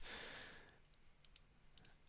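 A few faint computer mouse clicks in the second half, over near silence: the Paint strand menu command being clicked.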